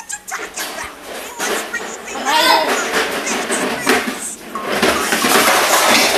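Loud clattering and rattling of a child's wagon being swung around a small room, building up after about a second and a half, with voices shouting over it.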